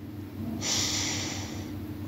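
A man's single audible breath, a hiss starting about half a second in and lasting about a second, then fading.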